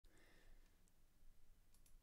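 Near silence: faint room tone with a few faint clicks.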